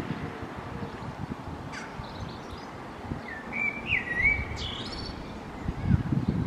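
A bird sings a short phrase of whistled notes that glide up and down, about three seconds in, with a few higher notes just after, over steady low outdoor background noise.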